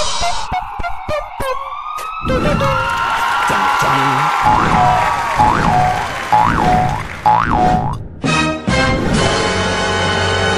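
Cartoon sound effects over music: a falling pitch glide with a few sharp clicks, then four quick up-and-down pitch sweeps about a second apart, before the music carries on alone.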